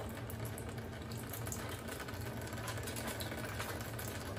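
Daikin wall-mounted air conditioner indoor unit, opened up, giving a steady low hum with a faint watery hiss. A few light handling ticks sound over it.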